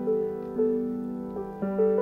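Soft piano chords on a Roland electric keyboard, each held steady, the chord changing about half a second in and again near the end.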